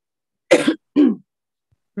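A person coughing twice in quick succession, about half a second apart, heard over a video-call line.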